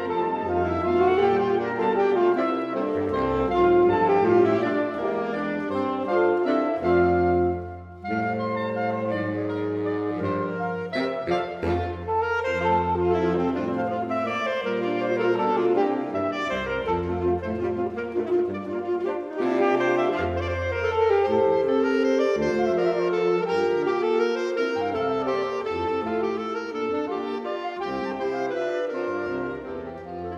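A saxophone septet (soprano, three altos, two tenors and baritone) playing an arranged traditional folk tune in close harmony, with a short break between phrases about eight seconds in.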